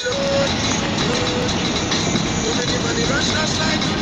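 Steady road and traffic noise from a car driving on a highway, with a few short voice-like calls over it.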